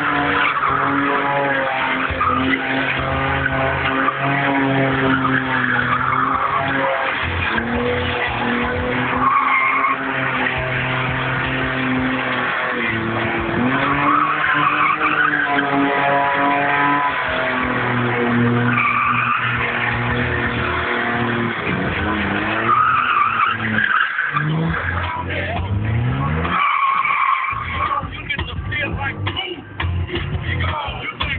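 A BMW E30's 2.7 eta straight-six revving up and down as it spins donuts, its rear tyres squealing and screeching throughout. The engine note rises and falls repeatedly and drops away near the end.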